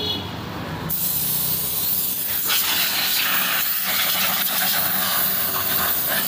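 Compressed air hissing from a handheld blow gun, blowing dust out of carved wood. The hiss starts suddenly about a second in and grows louder about halfway through, then holds steady.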